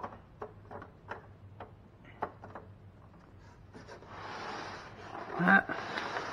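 Handling noise from a power cord at the back of a chest freezer: scattered light clicks and knocks, then from about four seconds in a couple of seconds of rubbing as the cord is moved about.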